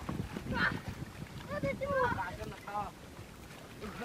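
Several boys shouting and laughing in short excited bursts, over a low rumble of wind on the microphone.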